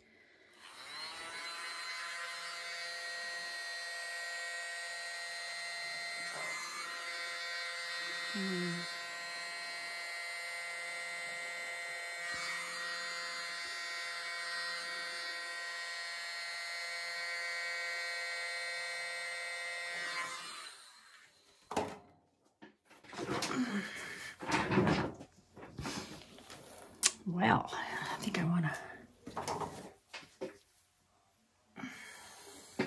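A handheld mini electric blower running steadily: a small motor's whine under a hiss of air, blowing wet acrylic paint outward into bloom petals. It cuts off about two-thirds of the way in, and irregular knocks and handling noises follow.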